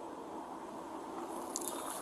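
Low, steady background noise with a faint hum, and a few soft clicks near the end.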